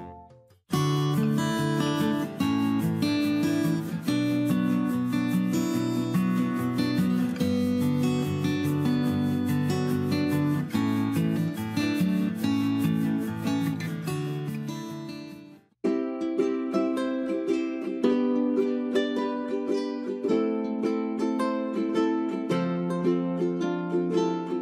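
Background music: a light tune of plucked strings. It cuts out briefly near the start and again about two-thirds of the way through, then a new tune starts.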